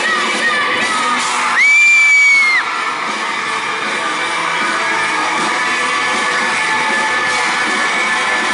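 A live indie rock band playing in a hall while the audience cheers and whoops. About a second and a half in, one loud, high-pitched scream close by holds steady for about a second.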